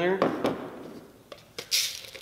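Dry rice poured from a small mold into a measuring cup: a soft rustle of grains, a couple of light clicks, and a brief louder hiss near the end.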